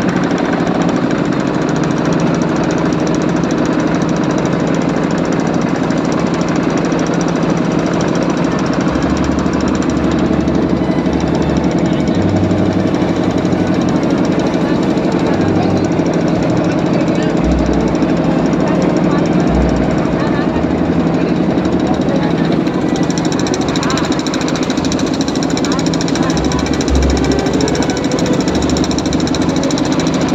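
Motorboat engine running steadily, heard from on board.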